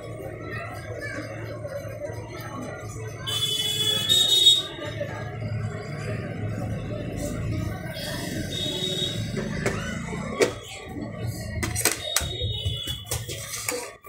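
Blended banana shake pouring from a steel mixer-grinder jar into a glass, with a few sharp clinks of the steel jar and glass near the end. A high-pitched tone sounds in the background two or three times, the first about three seconds in being the loudest.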